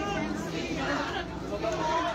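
Several people talking over one another in a crowded scrum of reporters, a steady babble of overlapping voices with no single clear speaker.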